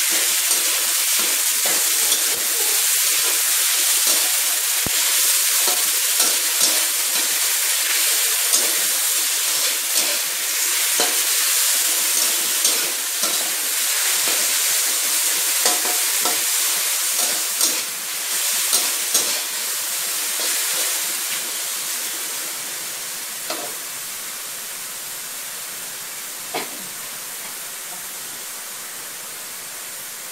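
Bhutan oyster mushrooms and chilies sizzling in hot oil in a wok, with a metal spatula scraping and clicking against the pan as they are stir-fried. After about twenty seconds the sizzle drops lower and the spatula strikes become occasional.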